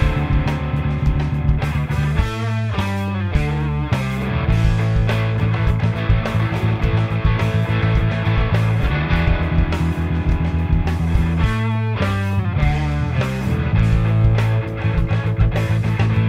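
Gibson Les Paul Classic electric guitar with '57 Classic humbuckers, distorted through a Pro Co RAT pedal into an Egnater Tweaker 40 amp, playing rock guitar over a full-band backing track with bass and drums. The guitar plays two quick flurries of notes, one a few seconds in and one about three quarters through.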